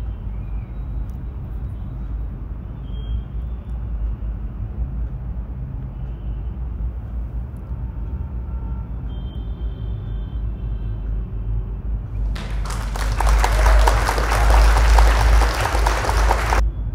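A steady low rumble, then about twelve seconds in a loud rushing noise that swells for about four seconds and cuts off sharply: the quiz's answer-reveal sound effect.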